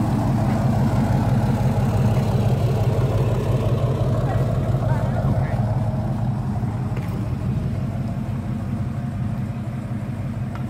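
A vehicle engine idling: a steady low hum that grows slightly quieter in the second half.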